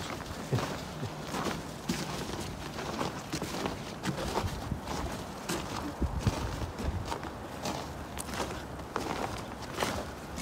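Footsteps on a snow-covered bridge deck at an unhurried walking pace, about two steps a second.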